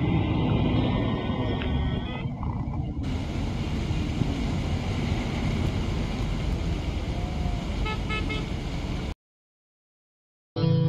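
Road traffic: cars running past steadily, with a few short car-horn toots. The sound cuts off abruptly near the end.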